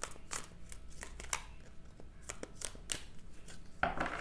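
A deck of tarot cards being shuffled by hand: an irregular run of soft card clicks and flicks.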